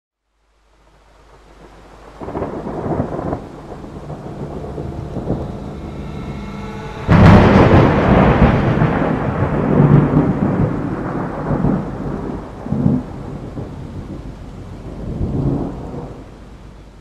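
Thunderstorm sound effect: rain over low rolling thunder, with one sharp thunderclap about seven seconds in, followed by a long rolling rumble that swells a few more times as it dies away.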